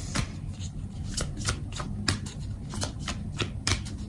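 A deck of oracle cards being shuffled by hand: a quick, irregular run of short card snaps and flicks.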